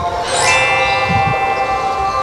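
A single bell-like chime, struck about half a second in and ringing on with many clear, steady tones, used as an edited transition sound effect.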